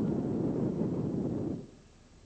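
A car driving close past, a rough noise of engine and tyres on the road that cuts off suddenly about one and a half seconds in.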